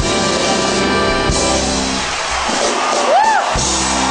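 Live band playing a boogie-woogie number with drums and sustained instrumental chords. The texture thins a little past halfway, and a short rising-then-falling high note sounds near the end.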